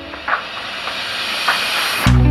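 A steady hiss of noise, with two brief brighter swells, one about a third of a second in and one about a second and a half in.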